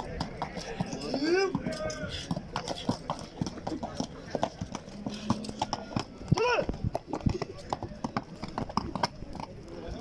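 A horse's hooves striking packed earth in an irregular clatter as it prances and rears under its rider. Two short voice-like calls come through, one about a second and a half in and a louder one about six and a half seconds in.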